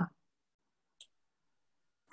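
Near silence, with the tail of a spoken word at the very start and a single faint, short click about a second in.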